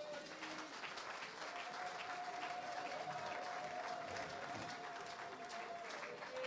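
A congregation applauding, faint and steady, after a line of the sermon. A faint held tone joins in about a second and a half in.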